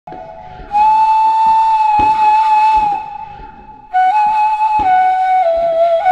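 Solo flute playing a slow melody of long held notes: one long note from about a second in, then after a short pause a phrase that steps down in pitch. A few faint thuds sound underneath.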